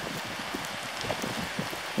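Steady outdoor hiss, like air moving over grass and rock, with a few faint ticks and small knocks.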